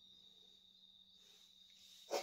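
Near silence, with the faint steady high-pitched trill of a cricket.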